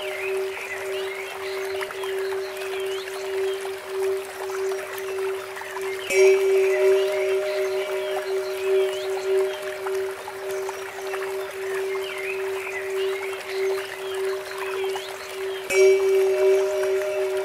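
Meditation music: a steady held tone near 432 Hz under trickling water and small bird-like chirps. A Tibetan bell is struck twice, about six seconds in and again near the end, and its ring slowly fades each time.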